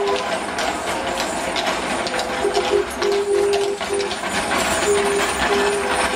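A simple tune of held notes plays over a steady clatter of many irregular clicks and rattles from a horse-drawn sweeper cart, its wheels and the horse's hooves going over stone setts.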